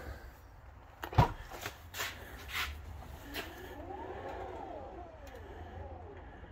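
A 2022 Tesla Model X falcon wing door powering open. A sharp click comes about a second in, followed by a few lighter ticks. Then the door's motor whines, rising and then falling in pitch as the door lifts.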